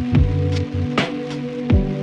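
A slow music beat with rain sounds mixed in. Deep kick drums that drop in pitch land near the start and about three-quarters of the way through, with a sharp hit about halfway, over held bass and keyboard notes.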